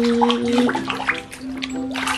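Water splashing and sloshing in a tub as a hand scrubs a plastic toy dinosaur under the water, over background music with held notes.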